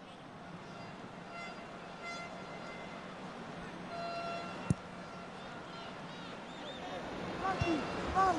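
Stadium crowd noise at a football match, a steady hum with a few short horn toots from the stands about two and four seconds in, and a sharp click just before five seconds.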